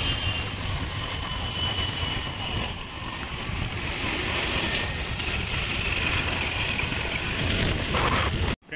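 Wind buffeting the microphone over the steady running noise of a moving motorbike and its tyres on the road.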